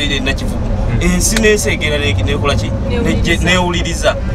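People talking inside a moving minibus taxi, over the steady low rumble of its engine and road noise.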